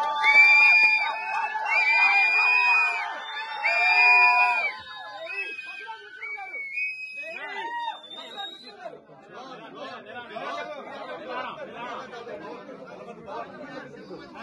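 Crowd of men shouting loudly in long held cries for about the first five seconds. It then settles into quieter general chatter and babble.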